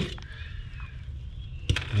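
Quiet handling noise as red-footed tortoises are lifted from a pile: a low rustle with a light knock shortly after the start and a sharper knock near the end.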